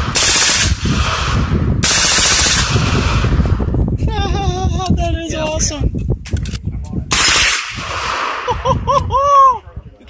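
Fully automatic gunfire from a compact submachine gun, in three bursts: one just at the start, a longer one of about a second about two seconds in, and a short one about seven seconds in. Voices are heard in the pauses.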